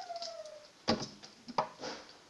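A spoon and plastic mixing bowl knocking: one sharp knock about a second in, then a few lighter clicks as stirring of a sugar-and-oil scrub begins. Before that, a drawn-out faint tone falls slowly in pitch and fades out.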